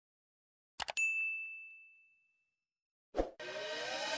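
Two quick clicks, then a single bright bell-like ding that rings out and fades over about a second and a half. Near the end a short hit leads into the start of electronic dance music with rising sweeps.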